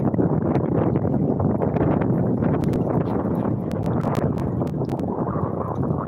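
Wind buffeting the microphone at the seashore: a steady rushing noise, with faint scattered clicks.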